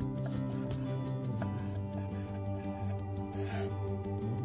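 Gentle background music with sustained instrumental tones, with a short scraping rub near the end.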